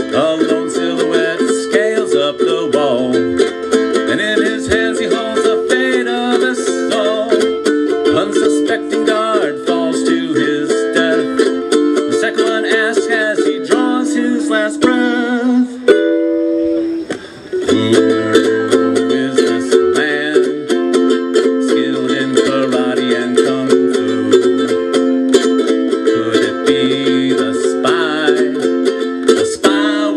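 Solo ukulele playing a lively instrumental passage of fast strummed and picked chords and melody. About sixteen seconds in the playing breaks off briefly to a few held notes, then picks up again.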